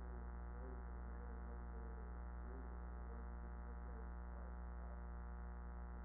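Steady electrical mains hum from the microphone and recording chain, a low buzz that carries on unchanged.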